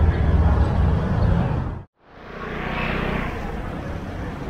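Outdoor city street ambience with a heavy, uneven low rumble that cuts off abruptly a little before halfway through; a quieter street ambience then fades in and swells briefly before settling.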